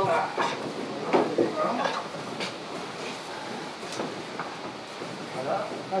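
Scattered wooden knocks and creaks as a wooden aircraft fuselage with its wings is lowered by hand onto a wooden trestle, with a few sharp knocks in the middle.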